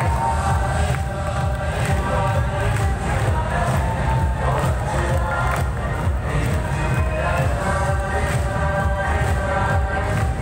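Loud live concert music with a heavy, steady bass beat, mixed with a large crowd cheering.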